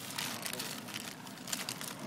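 Plastic packaging crinkling as it is handled, an irregular run of rustles and crackles.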